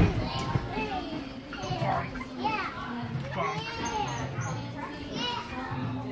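Many children's voices shouting, calling and squealing over one another in an indoor play centre, with a single sharp thump right at the start.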